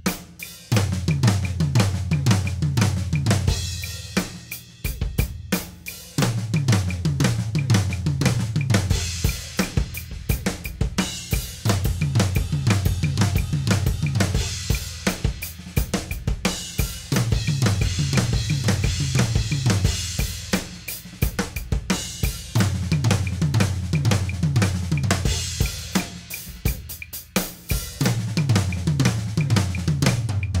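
Acoustic drum kit playing flammed fills: flam accents moved around the toms, with the left hand taking the last note of each accent on the first rack tom, between bass drum, snare, hi-hat and cymbals. Each fill steps down in pitch from the high toms to the low ones, and the phrase repeats about every five to six seconds.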